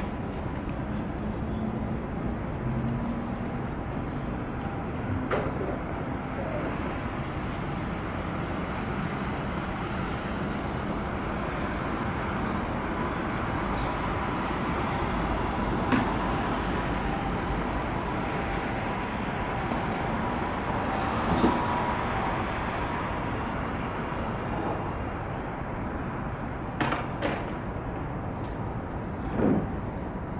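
Steady hum of city road traffic, with a few brief clicks and knocks.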